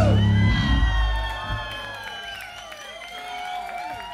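A rock band's final chord rings out and dies away in the first second and a half. A concert crowd cheers over it, with many high whoops and whistles rising and falling, and the cheering slowly fades.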